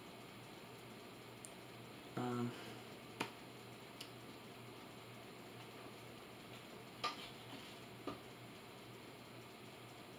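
Quiet room tone with a short vocal murmur about two seconds in and four faint, sharp clicks spread through the rest.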